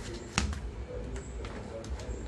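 Quiet handling at a kitchen counter as a bowl of dough balls is covered with a cloth and a dough ball is set down, with one sharp tap about half a second in and a few faint ticks near the end.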